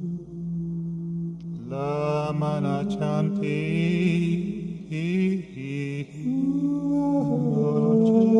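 Layered male voice from a live loop recording, chanting sung syllables (light language) in intuitive singing. A low held tone runs underneath, and about two seconds in a higher voice line enters and glides between pitches over it.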